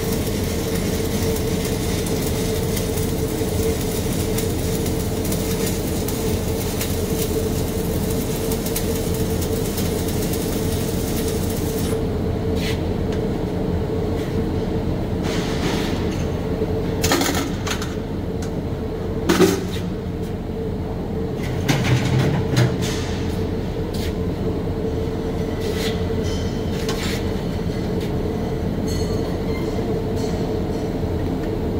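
Stick-welding arc crackling steadily, then cutting off about twelve seconds in as the weld pass stops. A steady fume-extractor hum runs under it, and a few sharp knocks come in the second half.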